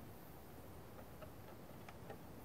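Very quiet background with a few faint, scattered ticks in the second half.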